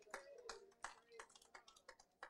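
Faint, scattered hand claps, uneven, about two or three a second.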